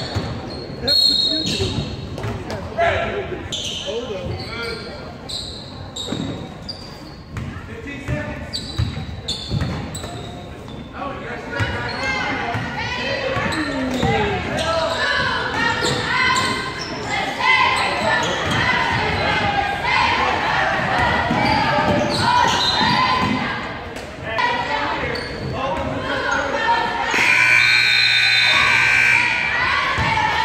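Basketball dribbling on a hardwood gym floor with short sneaker squeaks, in a large echoing hall, then many voices calling out from the players and crowd. Near the end a scoreboard buzzer sounds one steady tone for about two and a half seconds as the game clock runs out.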